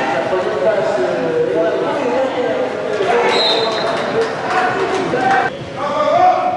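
A voice talking, echoing in a large indoor hall, with a short high whistle tone a little after three seconds in.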